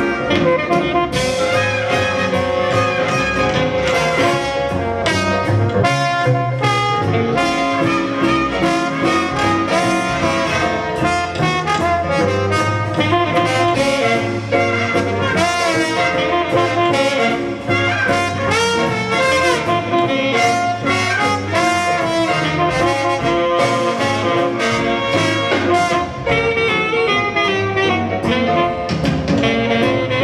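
A jazz big band playing live: saxophones, trumpets and trombones over a drum kit, with steady drum hits keeping time.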